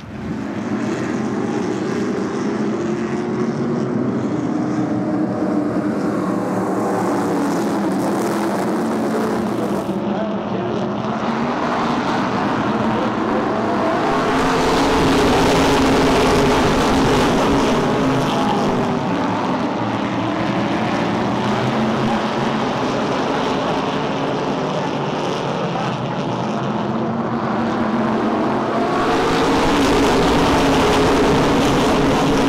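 A pack of SK Modified race cars running at racing speed around the oval, several engines at once. The sound swells as the field comes past, about halfway through and again near the end.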